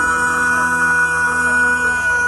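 Male rock singer holding one long, steady belted note, live, with the band beneath.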